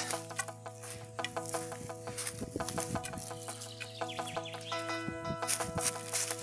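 Footsteps crunching and snapping through dry fallen leaves and twigs on a forest path, irregular clicks over a steady hum of several tones.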